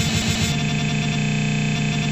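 Loud rock band jam with electric guitar and shouted vocals. About half a second in, it turns into a harsh, rapidly repeating buzz, like audio stuck in a loop on a frozen computer.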